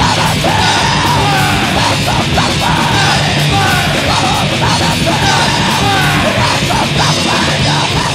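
Hardcore punk band playing at full tilt: distorted guitar, bass and drums under shouted vocals, loud and unbroken.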